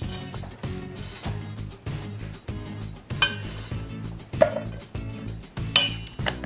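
Background music over clinks and knocks of metal on a stainless steel mixing bowl as canned apple pie filling is poured in and a spoon works in the bowl.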